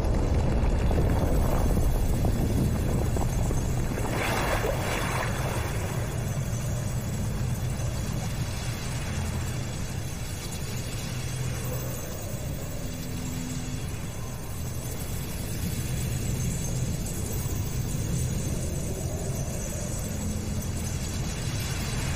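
Film sound design: a steady, deep rumbling drone, with a brief whoosh about four seconds in.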